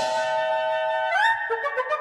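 Cartoon background score: a sustained melody note that steps up in pitch about halfway through, followed by a few short quick notes near the end.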